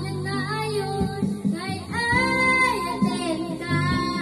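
A young girl singing an Ilocano waltz into a handheld microphone over a karaoke backing track with guitar; about halfway through she holds one note for most of a second.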